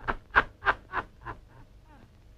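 A man laughing in short, evenly spaced bursts, about three a second, dying away near the end.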